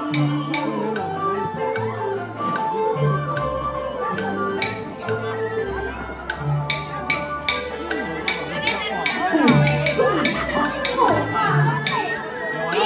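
Gezi opera (Xiangju) instrumental accompaniment: held melody notes over a bass line, with sharp percussion strikes that come more often in the second half, and sliding pitches near the end.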